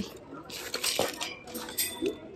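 Cosmetic bags being handled on a wire display shelf: rustling with light metallic clinks against the wire, and one sharper click about halfway through.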